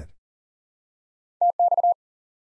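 Morse code sent at 40 words per minute as a single steady tone of about 700 Hz, keyed on and off in quick dashes and dots. It is the ham-radio abbreviation TX ("transmit"): one dash, then dash-dot-dot-dash, starting a little over a second in.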